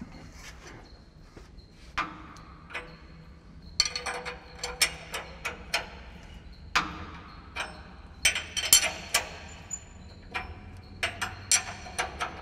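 Hand wrench working the roll-gap adjusting bolt on a Hesston 9300-series disc header's conditioner rolls: irregular runs of sharp metal clicks and clinks as the wrench is worked round the bolt. One full turn sets the roll gap by a sixteenth of an inch.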